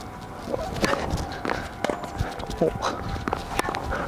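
Tennis ball being served and struck with rackets in a singles rally on a hard court: a series of sharp hits, with quick footsteps between them.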